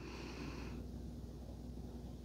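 A faint breath through the nose, one soft exhale lasting under a second, over a low steady hum.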